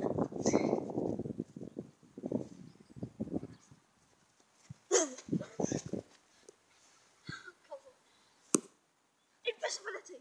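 Short vocal sounds from a child, among rumbling wind and handling noise on a handheld camera microphone carried across a field, with a sharp click about eight and a half seconds in.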